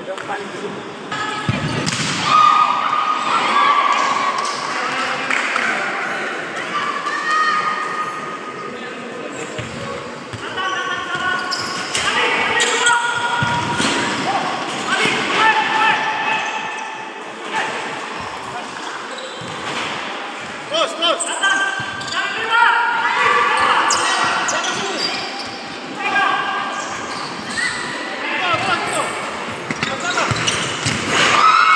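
Futsal ball being kicked and bouncing on the indoor court, with repeated sharp knocks, amid players shouting to each other in a large sports hall.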